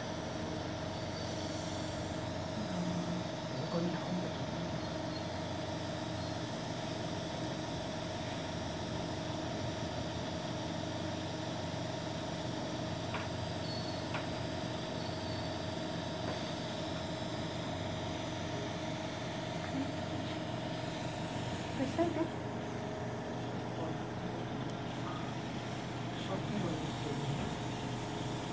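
Steady hum of running equipment, with several fixed tones held throughout, and a few brief faint sounds about three seconds in and again near the end.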